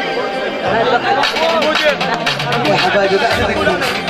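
Men's voices talking and calling out over one another. From about a second in there is a run of quick, sharp strikes.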